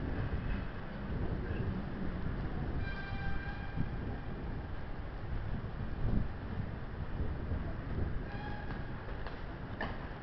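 A EuroCity train rumbling as it approaches along the station tracks, a steady low rumble, with brief high-pitched tones about three seconds in and again near eight seconds.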